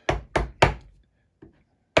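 A small carving chisel with a rounded, specially ground edge stabbing into a scrap softwood board to make practice cuts: three quick sharp knocks in the first half-second or so, then one faint knock.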